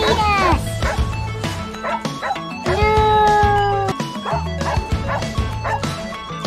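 A terrier howling: a short call falling in pitch at the start, then one long held howl about three seconds in, over background music.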